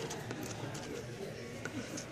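Light handling noise: a few short clicks and rustles as a coiled leather belt is picked up among clothes, over faint background voices.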